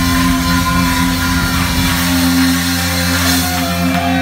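Thrash metal band playing live, loud distorted electric guitars and bass holding a sustained chord that rings steadily, with few drum hits.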